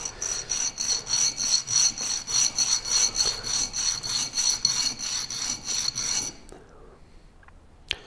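Steel cutter head of a pen barrel trimmer ground back and forth on a flat diamond sharpening plate: a rapid, even scraping rasp at about four strokes a second that stops about six seconds in. It is the sound of the dulled cutter faces being honed flat.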